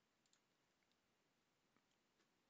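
Near silence: room tone, with two very faint clicks, one about a third of a second in and one near the end.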